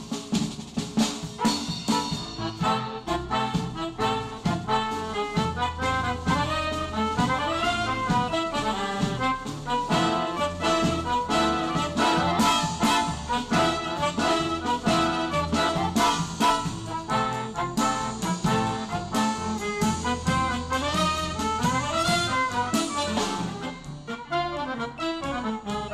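A small ensemble playing tango mixed with jazz: saxophone and trumpet carry the melody over bowed strings, drum kit and bass, with sharp drum hits in the first couple of seconds.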